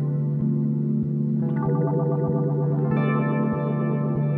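Electric guitar played through a Eurorack modular effects rack, heavily processed with echo and chorus-like modulation over a sustained low held note. New notes ring in about a second and a half in and again near three seconds.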